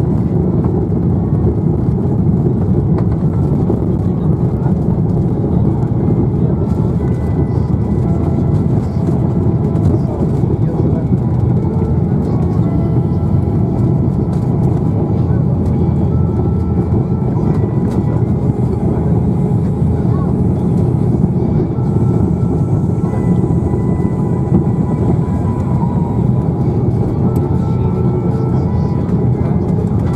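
Cabin noise of an Airbus A330-300 on its landing rollout: a loud, steady low rumble of engines and runway as the jet decelerates with its spoilers raised.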